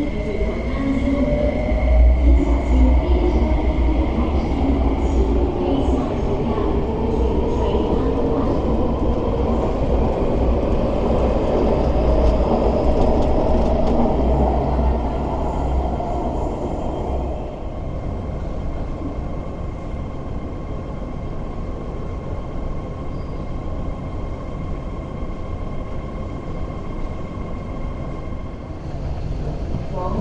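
MTR West Rail Line electric train (IKK-train) moving past the platform: a heavy rumble with the traction motors' whine rising in pitch. It fades after about 17 seconds to a quieter steady hum.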